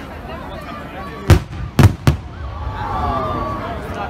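Fireworks display: three sharp bangs of aerial shells bursting, the last two in quick succession, with the voices of onlookers underneath.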